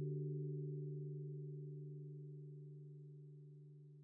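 The fading tail of a held electronic tone, gong-like with a few steady low pitches, dying away slowly and evenly.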